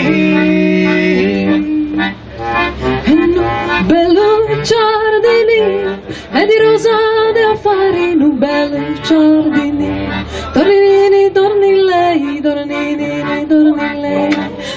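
Live folk song: a woman sings long, wavering held notes to acoustic guitar, with a tambourine jingling along.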